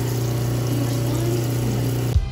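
Lapidary cabbing machine running with its water drip feeding the grinding wheels: a steady motor hum under an even wash of water noise.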